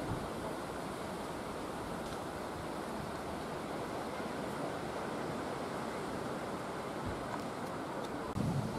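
Steady wind noise on the microphone outdoors: an even rushing with no distinct events.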